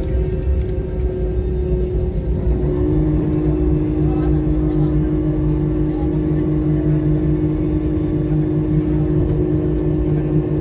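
Airbus A320-family jet engines heard from inside the passenger cabin, running at low power as the airliner taxis after landing: a steady whine over a low rumble. About three seconds in, the whine steps down to a slightly lower pitch and stays there.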